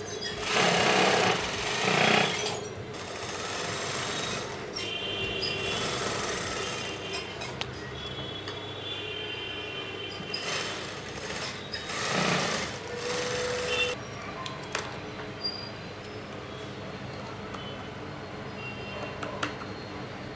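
Industrial sewing machine stitching in two bursts of about two seconds each, one near the start and one about halfway through.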